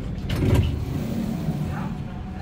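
Power-operated passenger doors of a public-transport vehicle opening at a stop: a low mechanical rumble, loudest about half a second in, easing off toward the end.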